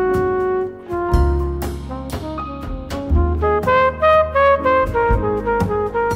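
Instrumental jazz passage: a trumpet plays a solo line over double bass and percussion. The trumpet holds one note for about a second at the start, then moves into a run of quick, short notes.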